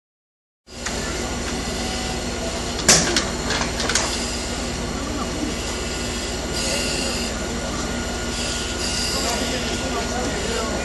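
A vehicle engine running steadily with a low hum. It cuts in just under a second in, with a few sharp knocks around three to four seconds and short bursts of hiss later on.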